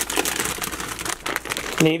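Plastic bag of shredded cheese crinkling as a toddler grabs it and pulls it off a refrigerator shelf, with a dense run of irregular crackles.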